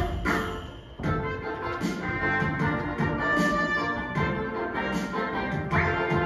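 Instrumental music with orchestral backing and no singing, a break between sung verses of a children's song; it dips briefly about a second in, then carries on.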